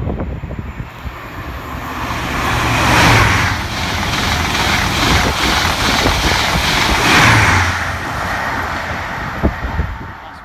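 A high-speed passenger train passing at speed on the main line. The rushing noise builds to a loud peak about three seconds in, stays loud with a low hum, peaks again about seven seconds in, then fades near the end.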